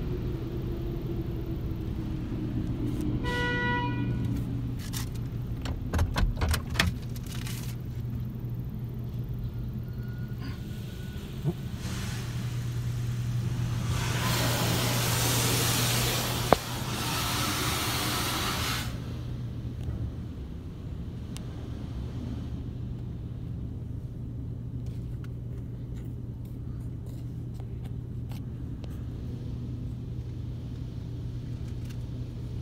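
Automatic car-wash machinery (Mark VII ChoiceWash XT, formerly a PDQ LW4000) heard from inside the car: a steady low hum throughout, with a whine falling in pitch over the first few seconds. A short beep comes near the start, a few knocks follow a few seconds later, and about halfway through a loud rushing hiss of the wash's spray or blowers lasts some five seconds before dying away.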